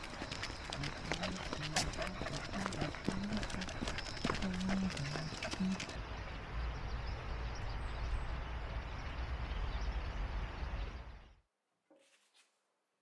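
Footsteps and a corgi's claws clicking on a ridged concrete path during a leashed walk, with a low steady rumble coming in about halfway; the sound cuts off suddenly near the end.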